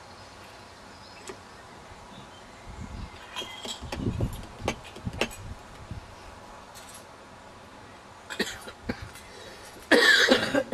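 Scattered light clinks and knocks of cups, glasses and cutlery on a café table, over a quiet steady background, with a cluster of low thuds and clicks in the middle and a few more clinks near the end.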